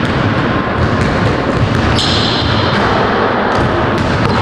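Basketballs bouncing on a hardwood gym floor during dribbling and passing drills.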